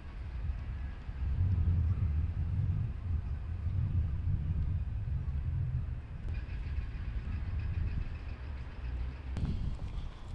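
Low, uneven rumble of outdoor street ambience, with no distinct events standing out.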